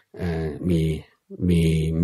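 Only speech: a man talking in Thai in a low, even voice, with a short pause about a second in.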